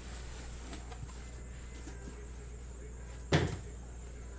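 A cardboard inner case of trading cards set down on a table with a single sharp thump about three seconds in, after faint handling of the boxes. A low steady hum runs underneath.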